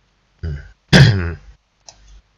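A man loudly clears his throat about a second in, with a short falling vocal rasp. A single mouse click comes near the end.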